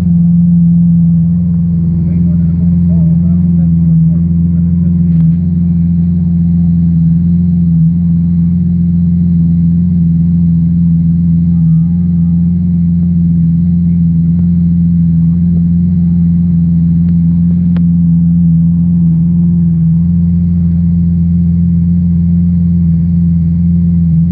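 Lamborghini Aventador's V12 idling steadily: an even, low drone that holds the same pitch throughout.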